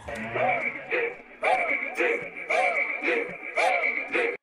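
A soloed vocal sample track from an amapiano beat playing back: short chopped vocal phrases repeating about twice a second, with a steady high tone underneath and no drums.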